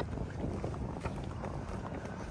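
Wind buffeting the microphone outdoors, a steady low rumble.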